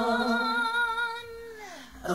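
Slowed-down a cappella female R&B vocals: layered voices hold a wordless note, then slide down in pitch and fade out near the end.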